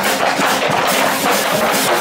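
Small street jazz band playing, drum kit, brass horn and guitar, with a dancer's shoes striking and stomping on loose wooden boards in time with the beat.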